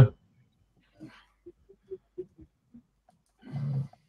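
A lull between speech with a few faint short murmurs, then a brief low voiced sound from a person, about half a second long, shortly before the end.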